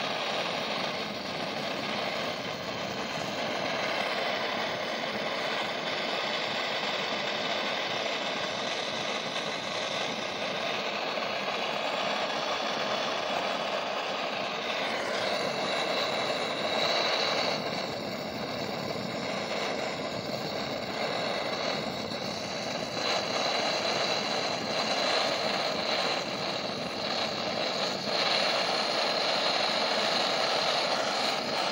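Hand-held butane blowtorch burning with a steady hiss as its flame is played over a cast-iron engine block, burning off oil that keeps leaching out of the iron's pores. A faint high whistle joins the hiss about halfway through.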